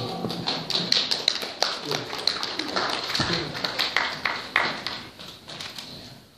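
A run of irregular sharp taps and clicks, several a second, with faint voices murmuring beneath.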